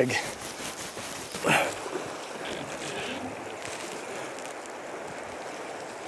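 Steady rush of a shallow river running over gravel, with a brief voice exclamation about a second and a half in.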